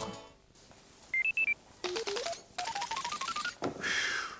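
A short jingle: a few brief high beeps, then a run of short plinking notes climbing step by step in pitch over about two seconds, with a ticking behind them, and a brief swoosh near the end.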